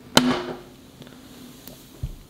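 A sharp pop as a handheld can opener's blade punctures the lid of a 1960s tin can, followed by a short hiss of trapped air escaping. The can had built up a lot of air inside.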